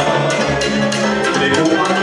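Moldovan folk music playing continuously, a band or backing track with several instruments and percussion keeping a steady beat.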